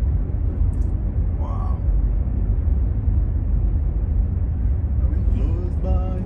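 Steady low rumble of road and tyre noise inside the cabin of a Jaguar I-Pace electric car cruising at about 35 mph, with no engine note.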